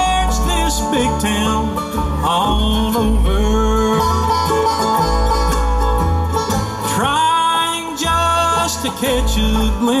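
Live bluegrass band playing an instrumental passage on banjo, acoustic guitar, mandolin, resonator guitar and upright bass, with the bass pulsing steadily underneath and some sliding lead notes.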